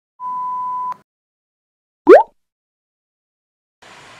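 Edited-in intro sound effects: a steady, pure beep lasting about three quarters of a second, then, about two seconds in, a very brief, loud upward swoop in pitch.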